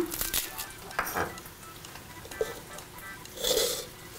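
A few light knocks of a knife on a wooden cutting board, then a short scrape about three seconds in as garlic cloves are pushed off the blade into a plastic blender cup, over faint background music.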